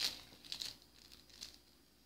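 Thin clear plastic bag crinkling in short bursts as hands pull a pair of sunglasses out of it, loudest at the start and about half a second in, then fading to faint rustles.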